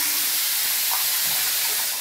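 Steady hiss with no clear event in it.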